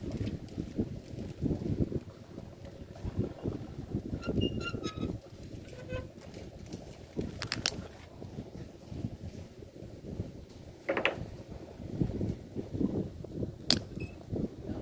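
Wind buffeting the microphone, a gusty low rumble, with a few short high chirps a little before the middle and a sharp click about halfway and another near the end.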